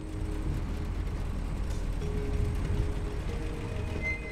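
Car engine running with a steady low rumble as the car pulls up, under background music with a few held notes.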